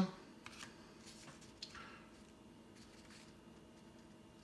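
Faint handling of a stack of baseball cards: a few light clicks and soft slides as the cards are flipped through by hand, mostly in the first two seconds.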